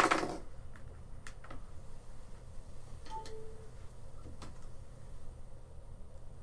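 A sharp knock at the very start, then scattered faint clicks and taps over a steady low hum, with a brief faint beep-like tone about three seconds in.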